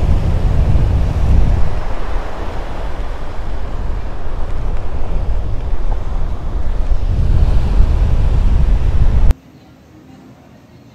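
Heavy wind buffeting the microphone over breaking surf and water washing around in the shallows, a loud rumbling rush that stops suddenly a little over nine seconds in.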